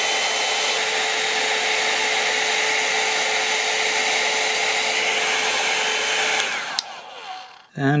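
Hair dryer blowing steadily with a fan whine. About six and a half seconds in it is switched off with a click, and the whine falls away as the fan spins down.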